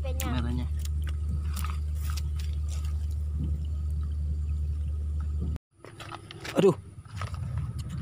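Steady low rumble of wind on the microphone, with a short voice at the start; it cuts off abruptly about five and a half seconds in, leaving quieter outdoor sound and a brief rising call.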